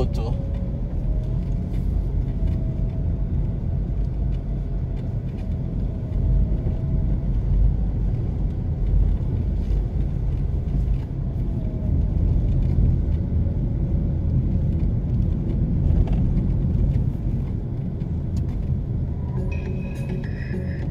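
Low, steady rumble of road traffic as cars pass close by at a busy intersection, swelling each time a vehicle goes past.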